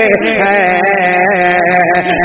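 A man's voice singing a naat, unaccompanied, holding a long, gently wavering note between lines of the refrain.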